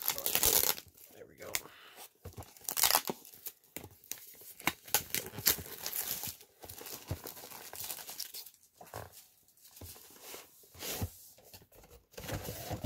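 Clear plastic shrink-wrap being torn and peeled off a cardboard box, crinkling in irregular bursts, loudest near the start and about three seconds in.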